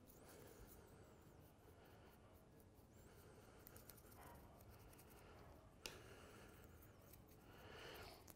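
Near silence: faint scratching of a paintbrush working paint onto a small figure held in the hand, with one light click about six seconds in.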